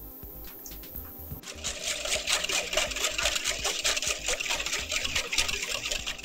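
A metal wire whisk beating eggs and milk in a glass baking dish, the wires clicking rapidly against the glass. The whisking starts about a second and a half in and runs until just before the end, over faint background music.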